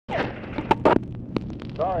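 Steady electrical hum of an old telephone-call recording, broken about a second in by three sharp clicks on the line, the first two the loudest.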